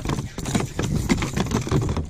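Irregular knocking and rattling with water noise as a bass is reeled in beside a plastic fishing kayak and the paddle is moved aside.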